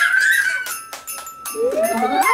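A young girl's high-pitched excited squeal, held and ending about half a second in, followed by a few sharp clicks and then voices again near the end.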